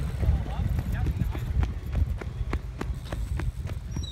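Low wind rumble on the phone's microphone, with a run of sharp ticks that settles to about three a second in the second half.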